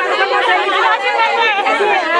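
Several women talking at once, their overlapping voices forming animated chatter.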